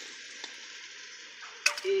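Oil sizzling steadily in a pot of freshly added cherry tomatoes over sautéed onion and garlic, with a sharp metal click about one and a half seconds in.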